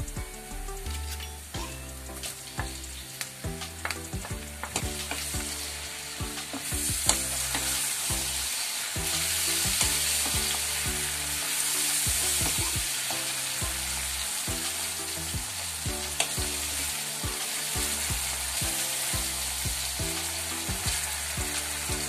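Diced tomatoes and onions frying in hot oil in a pan and being stirred: steady sizzling with clicks of the spoon. The sizzle gets louder about a third of the way in.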